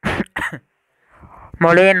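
A person coughs twice in quick succession, two short harsh bursts, then after a brief pause goes back to speaking.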